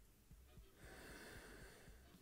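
A person sniffing in through the nose while nosing a glass of whisky: one faint, hissy inhale of about a second, starting near the middle.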